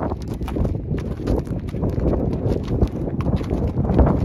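A horse's hooves stepping on gravelly ground at a slow walk, a run of irregular crunching steps close by.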